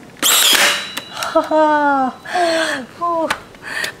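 Cordless nail gun firing once: a sharp, loud burst about a quarter second in. It is followed by a woman's high-pitched, falling laughs and squeals.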